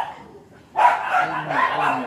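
A dog barking several times in quick succession, starting a little under a second in after a brief lull.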